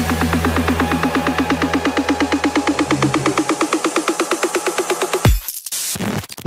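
Electronic dance music: a fast, evenly repeating synth pulse over a held bass note. About five seconds in, the beat drops out into a rushing noise sweep and choppy cut-outs.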